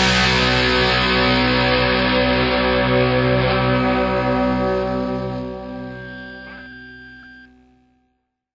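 The final chord of a punk rock song, played on distorted electric guitar, rings out and fades slowly after the drums stop. It cuts off near the end.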